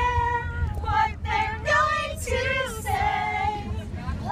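Young female voices singing together in long held, sliding notes, over the low rumble of road noise inside a moving vehicle.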